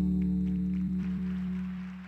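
The closing bars of slow routine music: one low chord held and slowly fading, cutting off near the end.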